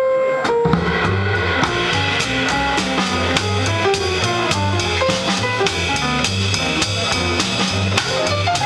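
Live jazz combo playing a swing tune: upright piano runs fast lines of single notes over a steady bass line, with the drum kit keeping even time on the cymbals.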